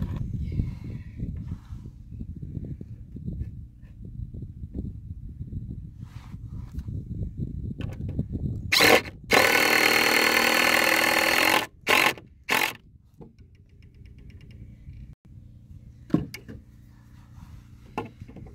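Ridgid 18V cordless impact driver sinking a screw into a wooden deck board: a short burst, then a hammering run of about two seconds, then two brief bursts. A low rumble fills the first half beforehand.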